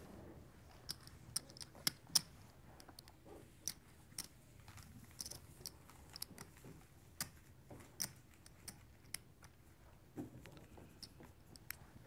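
Poker chips clicking together as they are handled and stacked on the felt table: a faint, irregular series of sharp clicks, the loudest a couple of seconds in.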